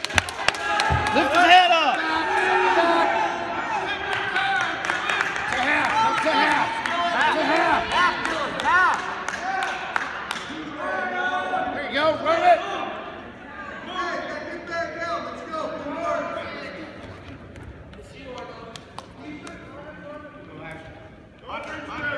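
Unintelligible shouting from several voices echoing in a gymnasium, with a few sharp knocks from the wrestlers on the mat. The shouting is loud for the first ten seconds or so, then thins out and grows fainter.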